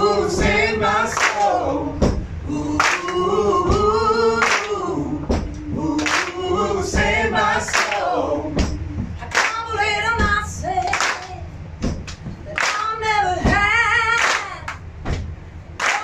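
Several voices singing together, led by a woman's voice, with hand claps keeping a steady beat and little instrumental backing.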